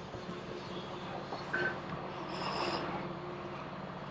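Steady low engine hum from the vehicle moving the boat trailer through the yard, with a couple of faint brief sounds around the middle.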